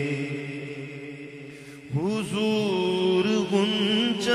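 Male naat reciter singing a devotional melody into a microphone without words. A held, wavering note fades away over the first two seconds. Then a new phrase begins with a sliding, ornamented rise and settles on a long held note.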